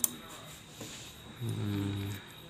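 A single sharp click as the metal bobbin case is taken out of an industrial sewing machine's hook, then, well over a second later, a short low hum from a man's voice lasting under a second.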